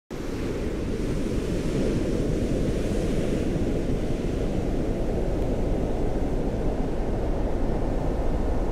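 Stormy open-sea ambience: a steady low rumble of waves and wind, with a higher windy hiss that eases off after the first few seconds.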